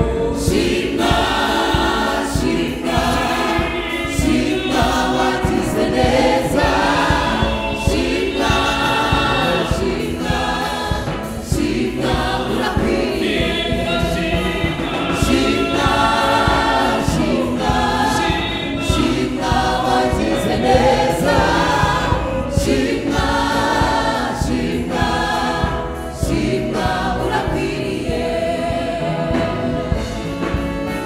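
Rwandan gospel choir singing many-voiced with microphones, over a keyboard and drum kit keeping a steady beat.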